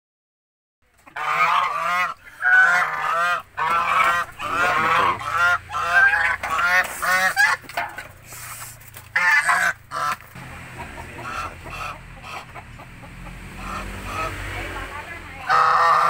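A pair of white domestic geese honking in a rapid, repeated series of loud calls that start about a second in. The calls ease off after about ten seconds, and a few weaker calls follow.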